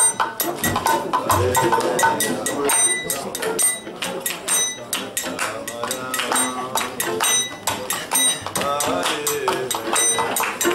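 Kirtan music: a harmonium playing held chords, hand cymbals (karatalas) clashing in a steady beat of about three to four strokes a second with a bright metallic ring, and a voice singing over them.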